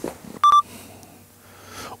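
A short, loud electronic beep about half a second in, lasting a fraction of a second and starting with a sharp click: an edited-in sound effect marking a blooper and retake.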